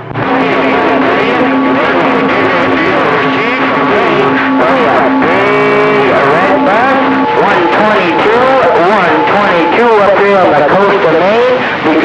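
Distant CB stations heard through a Cobra 2000 base station's speaker on channel 28: garbled, overlapping voices of several operators transmitting at once, with a steady tone running under them that stops about seven seconds in. The signal is strong, pinning the radio's S-meter.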